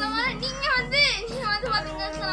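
A boy talking excitedly in a high voice over background music with a steady beat.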